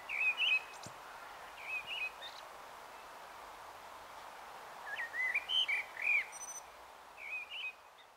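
A male Eurasian blackbird singing: short warbled phrases, one near the start, one about two seconds in, a longer run around five to six seconds in and a last one near the end, over a faint steady hiss.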